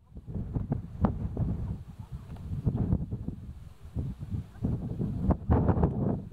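Wind buffeting the camera microphone in uneven gusts, a low rumble with occasional sharper pops.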